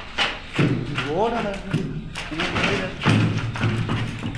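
Loud, repeated thuds, with a man's startled, rising shout of "What?" about a second in, over music.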